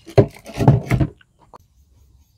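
Handling noise from a cellular signal repeater kit: the repeater unit and its antenna are rubbed and knocked against their cardboard box and the table, in a rough burst of scraping through the first second, then a few light clicks.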